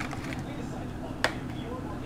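A utensil stirring a thick sauce in a plastic container, with one sharp tap against the container about a second in, over a steady low hum.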